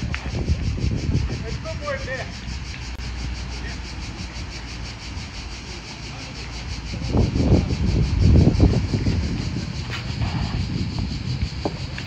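Outdoor background rumble, with traffic or wind on the microphone and faint distant voices. It swells louder for a couple of seconds about seven seconds in.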